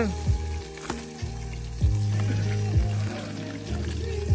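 Food sizzling as it fries in a pan on a portable gas stove, under background music with a deep, steady bass beat.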